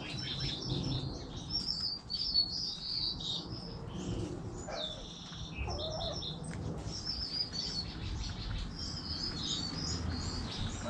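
Small birds chirping in a dense run of quick, high-pitched twitters, with a brief lower call about halfway through.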